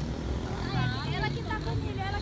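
Indistinct voices talking over a low, steady rumble of street traffic. A thin, high steady tone comes in a little before the middle.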